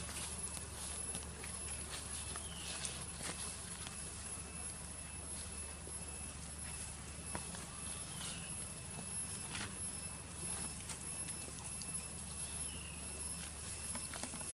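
Long-tailed macaques picking food from a metal tray: scattered light clicks and taps over a steady outdoor background. A short falling whistle recurs every few seconds.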